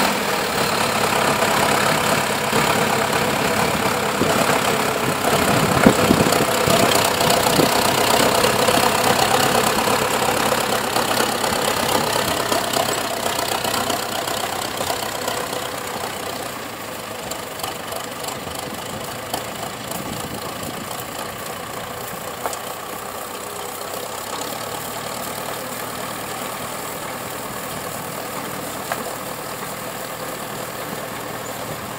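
Zetor 7211 tractor's diesel engine running steadily under load as it drives a snowblower cutting through and throwing snow. Loud at first, then quieter from about halfway through.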